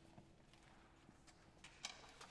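Near silence after a brass piece ends: the last held note dies away at the very start, followed by a few faint clicks and knocks as the brass players lower their instruments. The loudest knock comes near the end.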